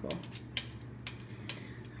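Metal spoon spreading a thin layer of water over aluminium foil, with a few light clicks and scrapes of metal on foil.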